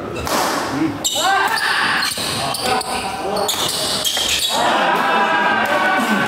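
Badminton rally on an indoor wooden court: rackets strike the shuttlecock in a string of sharp hits, with shoes squeaking on the floor as the players move, in a hall with some echo.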